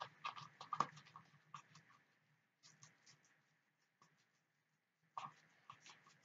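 Plastic spoon stirring and scraping in a plastic cup: quiet clusters of small clicks and scrapes, the busiest in the first second, more around three seconds in and again near the end.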